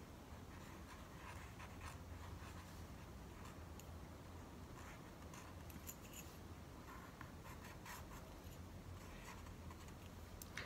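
Faint scratching and light taps of an ink-dipped wooden drawing stick marking wet watercolour paper, over a low steady hum.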